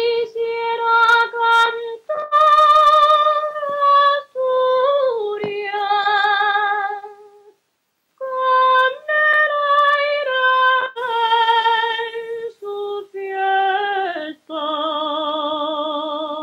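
A woman singing alone, unaccompanied: the old lullaby an Asturian grandmother sang at bedtime. Two phrases with a short break about halfway, sung on held notes with vibrato, the second ending on a long held note.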